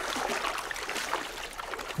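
Wader boots sloshing through shallow, ankle-deep creek water: irregular splashing as people walk in the stream.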